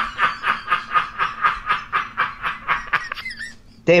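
A man laughing in a steady run of short breathy pulses, about four or five a second, trailing off about three seconds in.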